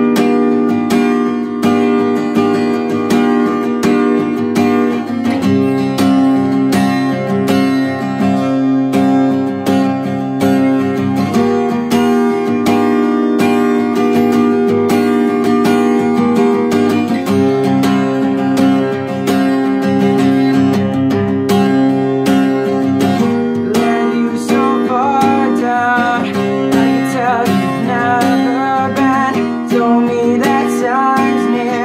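Acoustic guitar strummed in a steady pattern, its chord changing about every six seconds. A man's voice starts singing over it in the last few seconds.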